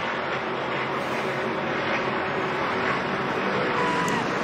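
A pack of NASCAR racing trucks running at speed past the track microphones, their V8 engines merging into one steady, dense engine noise. Near the end one engine note drops in pitch as a truck goes by.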